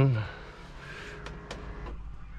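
Electric motor of a motorhome's drop-down ceiling bed running faintly as the bed lowers, with a few light clicks.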